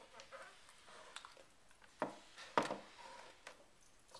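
A few faint, sharp clicks and taps from hands handling a soft plastic tub of cornflour-and-water mix (oobleck).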